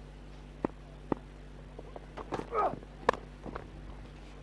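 Stump-microphone sound of a cricket delivery: a few soft clicks, a short falling call about halfway through, and a sharp crack of bat on ball about three seconds in, a shot that runs away for four.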